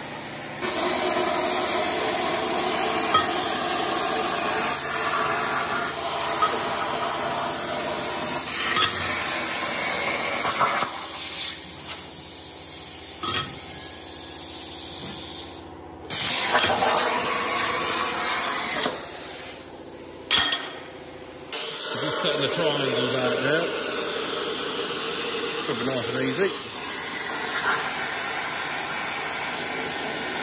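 Swift-Cut CNC plasma cutter's torch cutting steel plate, making a steady loud hiss of arc and air that breaks off and resumes a few times.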